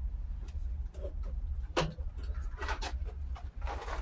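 Scattered light clicks and taps from an e-bike being taken hold of and handled, over a low steady rumble.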